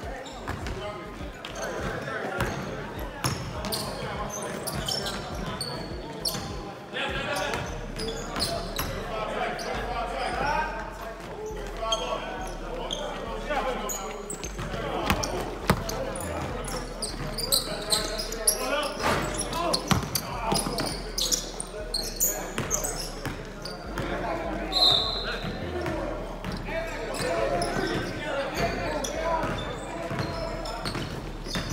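A basketball bouncing on a hardwood gym floor during play, as repeated sharp knocks, over players' voices and chatter in a large echoing gym.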